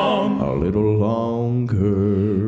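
Male gospel vocal quartet holding a long sustained chord on the end of a line, moving to a new held chord near the end.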